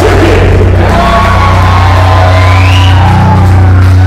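Heavy metal band's closing chord held and ringing out, a steady low bass note under distorted guitar with a long held high tone above, stopping abruptly at the very end.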